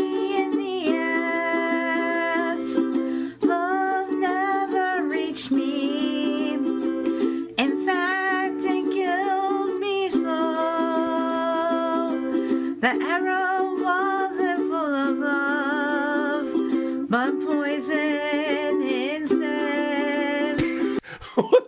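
A woman singing over a strummed electric ukulele that switches back and forth between the same two chords, with a wavering vibrato in the voice.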